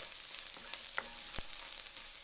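Minced garlic sizzling in hot oil in a wok as it is stirred, a steady frying hiss with two sharp clicks of the utensil against the pan about a second in.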